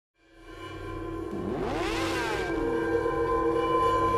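Logo intro music fading in, with sustained drone tones and a sweep that rises and then falls in pitch about midway through.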